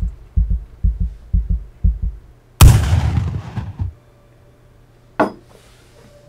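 Heartbeat sound effect, about five double thumps in a little over two seconds, then a single loud gunshot that fades out over about a second. A sharp click follows near the end.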